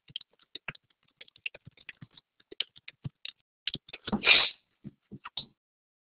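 Typing on a computer keyboard: quick, irregular keystrokes. A brief, louder rush of noise cuts in about four seconds in.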